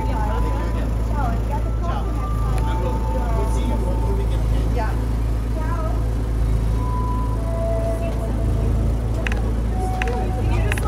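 City street ambience: a steady low rumble of traffic under indistinct voices.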